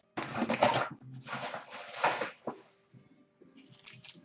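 Crinkling and rustling of foil trading-card pack wrappers being handled, in two noisy stretches over the first two seconds or so, then only faint rustles.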